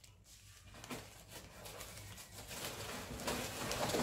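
Faint rustling of a shopping bag and plastic-wrapped groceries as a hand rummages inside the bag, growing a little louder toward the end.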